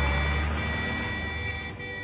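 Engine rumble of a light canvas-covered truck driving away, fading over the second half.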